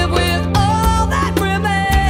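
Live rock band music: a woman's lead vocal holding sung notes with vibrato over keyboard, bass and drums.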